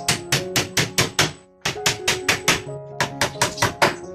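Hammer blows nailing a wooden cage frame, about five quick strikes a second in three runs with short pauses between, over background music with held notes.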